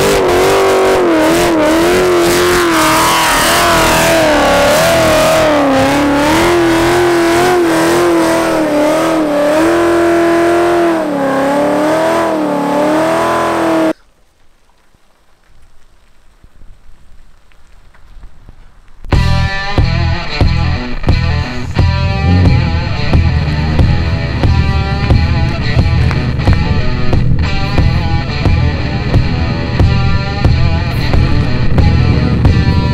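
A 1000 hp Shelby GT500 Super Snake's supercharged V8 held at high revs during a burnout, its pitch wavering up and down as the rear tyres spin. About fourteen seconds in it cuts off to near quiet, and about five seconds later loud guitar music with a heavy beat starts.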